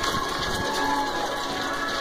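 Steady rushing noise of a crowd of marathon runners on the move, with irregular footfalls and handling knocks from a phone carried at a run.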